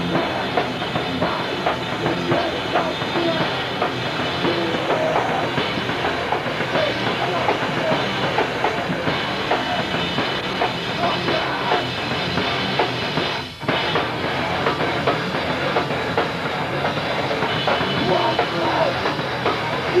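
Hardcore punk band playing live: electric guitar and drum kit at full volume. The music drops out for an instant about two-thirds of the way through, then carries on.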